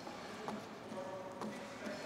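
Gymnast's hands slapping down on the leather body of a pommel horse in a steady rhythm, about two faint knocks a second, as he swings circles on the middle of the horse without handles.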